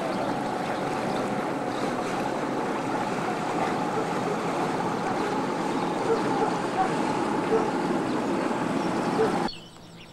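Steady rushing noise with a faint steady hum from the passenger ferry Oldenburg and a motor cruiser under way on the canal. It cuts off suddenly near the end.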